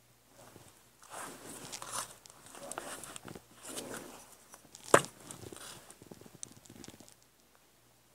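Rustling and crinkling of clear photopolymer stamps being handled, peeled off and repositioned on an acrylic stamp block. There is one sharp click about five seconds in, followed by a few lighter ticks.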